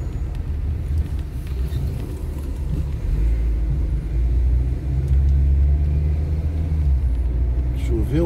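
Low, steady engine and road rumble heard from inside a moving car's cabin, growing louder about three seconds in.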